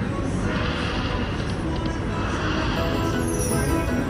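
Dancing Drums Explosion slot machine playing its free-games bonus music at a steady level while the reels spin and a small win tallies up.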